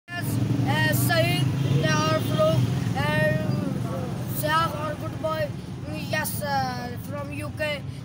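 A boy's voice, loud and close, over a steady low rumble of a vehicle engine running nearby; the rumble is strongest for the first three seconds and then eases.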